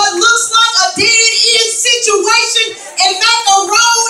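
A woman singing loudly into a microphone over a sound system, in phrases with short breaks between them.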